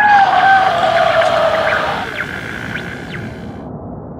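Sound-effect call of an undersea creature: one long, slowly falling moan over a steady hiss, dying away about halfway through, with a few brief rising chirps before the hiss cuts off near the end.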